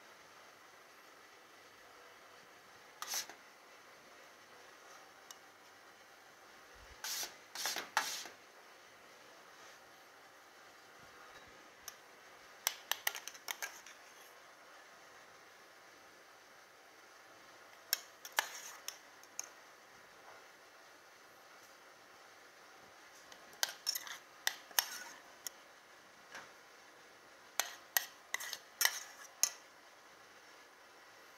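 Metal spoon clinking and scraping against ceramic bowls and a steel saucepan as food is spooned out, in short clusters of sharp clinks every few seconds.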